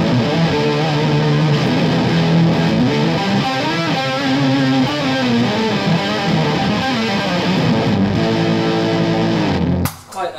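Electric guitar played through an EarthQuaker Devices Pitch Bay pitch-shifting pedal with a bit of gain, several pitch-shifted voices above and below the notes stacked over each phrase, with sliding bends. The playing cuts off suddenly near the end.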